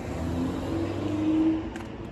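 A car's engine on a nearby road, its tone rising slowly as it accelerates, swelling louder about one and a half seconds in and then easing away.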